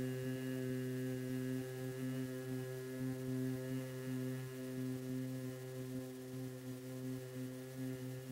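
Bhramari humming breath: a long, steady, low hum on one unchanging note, held through a slow exhalation as the humming sound of a bee, easing slightly in level toward the end.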